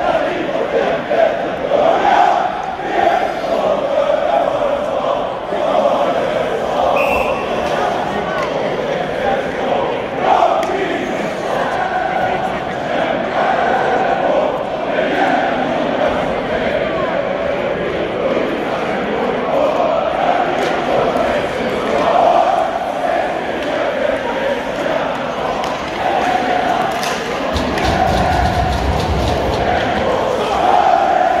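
Large ice hockey crowd singing a supporters' song together, the snapsvisa (a schnapps drinking song), as a steady wall of many voices.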